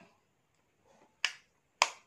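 Black plastic makeup compact being closed: two sharp snapping clicks about half a second apart as the lid shuts, with a faint tap just before.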